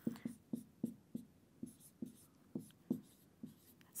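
Marker pen writing on a whiteboard: a quick run of about a dozen short strokes as a couple of words are written out.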